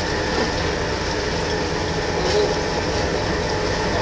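A heavy marine diesel engine or generator running steadily on board a vessel: a continuous, even mechanical rumble.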